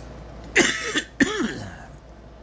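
A man coughing twice in quick succession: a harsh cough about half a second in, then a second, more voiced one just after a second in.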